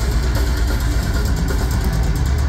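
Heavy metal band playing live through a concert PA: dense distorted guitars and drums with a heavy, rumbling low end.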